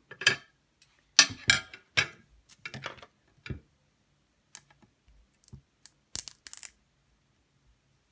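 Irregular short clicks and crackles of double-sided tape and a clear plastic sleeve being handled and pressed down on a glass craft mat. They are busiest in the first few seconds, with a few more near the end.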